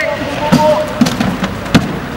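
Three sharp impacts, about half a second in, at one second and near the end, the first and last the loudest, with voices talking.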